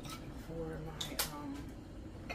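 A woman's voice making a short wordless murmur, with a couple of sharp clicks about a second in.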